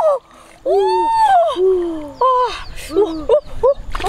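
Wordless vocal exclamations, a string of short calls that rise and fall in pitch, some high and some lower, over water splashing as large live fish are lifted out of shallow muddy water.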